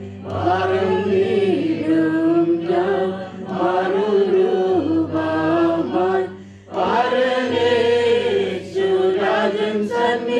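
A group of voices chanting a hymn together in long sung phrases, with a brief pause for breath about six and a half seconds in, over a steady low held note.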